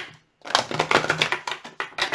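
A deck of tarot cards shuffled by hand. After a single click at the start and a short pause, a fast run of card flicks and clicks begins about half a second in.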